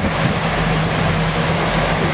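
A boat's engine running steadily with a low hum, under the rush of wind and waves on open sea.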